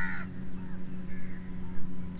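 Crows cawing in the background: one call right at the start and a fainter one about a second later.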